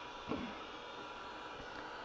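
Quiet room tone: a faint steady hiss, with one short soft sound about a quarter second in.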